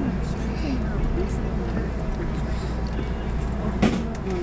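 Steady low hum inside a stopped JR West 221 series electric train, with a faint murmur of voices and one sharp click near the end.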